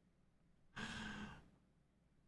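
A man's single sigh, a breathy exhale of about half a second around the middle; otherwise near silence.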